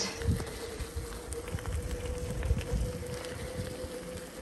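Electric bike riding along a gravel track: its motor gives a steady, even-pitched whine over the rumble of the tyres on loose gravel, with wind buffeting the microphone.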